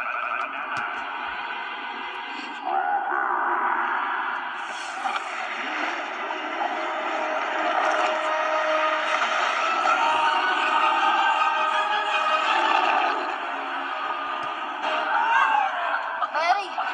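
An animated film's soundtrack, mostly music with sound effects, playing through laptop speakers and picked up in the room: continuous, thin, with almost no bass, and louder from about three seconds in.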